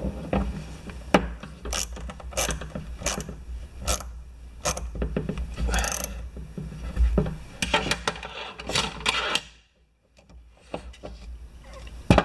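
A hand tool clicking and scraping against a pressure-washer pump manifold as a stuck valve is worked loose. There is a string of sharp metal clicks, roughly one every half second or so, over a low handling rumble, with a brief silent gap a little before the end.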